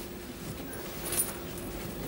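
Faint rustling of a wool suit jacket as a man pats and rummages through his pockets, with a steady low hum underneath.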